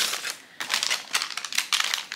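Small translucent plastic pouch crinkling and rustling as packets of pills are handled and pushed into it, with a brief lull about half a second in.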